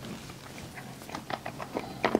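Faint mouth noises with scattered small clicks: extremely sour hard candy balls being sucked and rolled against the teeth.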